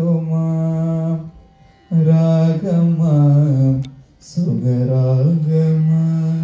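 A man singing solo and unaccompanied into a microphone, in slow phrases of long held notes with short pauses for breath between them.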